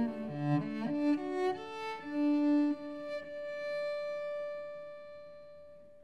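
Solo cello playing a short phrase of bowed notes, then holding one long high note that fades away in a slow diminuendo.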